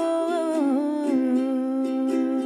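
A woman's voice holding a long wordless note that glides down to a lower one about half a second in, over a strummed ukulele.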